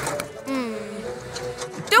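Cartoon soundtrack: background music with a short low, falling groan about half a second in.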